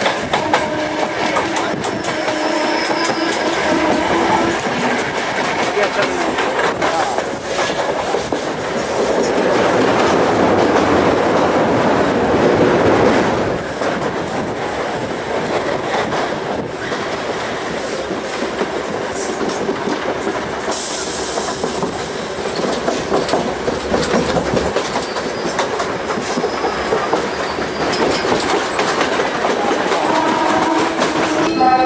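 Running noise of a suburban local train heard from its open doorway: wheels clattering over rail joints under a steady rumble, with a faint squeal in the first few seconds. The rumble swells louder for a few seconds about ten seconds in.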